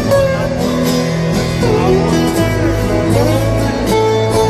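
Live rock band playing an instrumental guitar passage of a slow ballad over stadium PA speakers, recorded from the crowd, with some guitar notes that bend and slide up and down in the middle.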